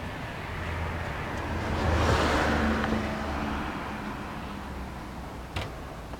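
A road vehicle passing by: its engine and tyre noise swell to a peak about two seconds in, then fade away. A short sharp click comes near the end.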